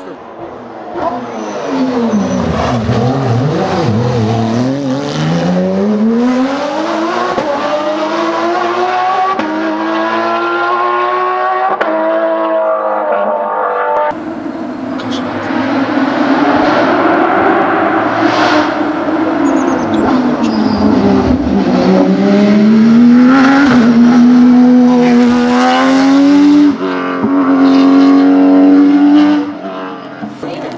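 Porsche GT rally car's engine passing: the revs drop steeply as it slows into a corner, then climb as it accelerates away. After a cut the same happens again, ending with the engine held at high revs.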